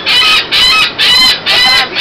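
A gull calling loudly in a quick series of short, harsh pitched calls, about two a second.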